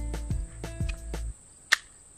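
A single sharp metallic click near the end from a Hi-Point C9 9mm pistol being handled after a round nose-dived on feeding, with faint background music in the first part.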